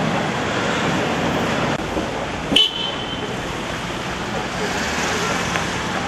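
Busy city street: steady traffic and crowd noise, with a brief, sharp high-pitched tone about two and a half seconds in.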